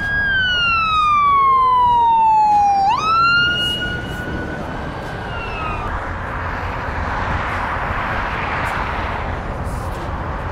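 Emergency vehicle siren wailing: one slow falling sweep, then a quick rise and a held note that fades out about six seconds in. After that, a steady rush of road and wind noise from the slowly moving vehicle.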